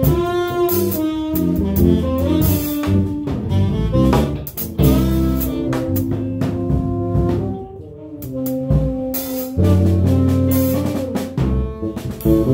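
A small jazz band playing live: tenor saxophone lines over electric bass, guitar and a drum kit with cymbals. The band briefly drops quieter about eight seconds in, then comes back up.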